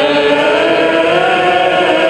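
A small group of voices singing a Catholic hymn slowly, holding long notes.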